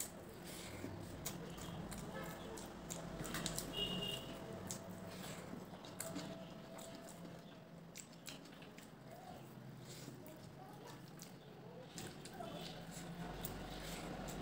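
A person chewing mouthfuls of rice and fried fish eaten by hand, with many soft clicks and smacks of the mouth throughout.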